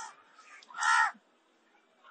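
A single short bird's caw about a second in, one brief harsh call.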